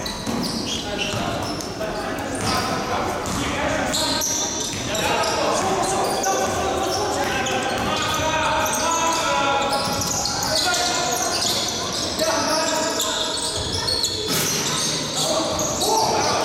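A basketball bouncing on the gym floor as players dribble during live play, with players' voices calling out indistinctly, echoing in a large sports hall.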